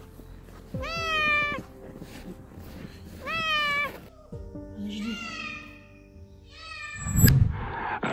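A domestic cat meowing four times, drawn-out meows a couple of seconds apart, the third one softer. A low thump comes with the last meow near the end.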